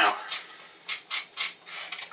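A teaspoon scraping ground cumin and salt out of a stone mortar, in four or five short scrapes.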